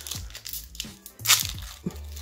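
Foil Pokémon booster pack wrapper being torn open and crinkled by hand: a few short crackles, the sharpest about a second and a quarter in.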